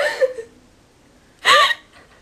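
Two short, non-word vocal bursts from a person. The first falls away at the very start; after a quiet pause, a single brief high cry comes about a second and a half in.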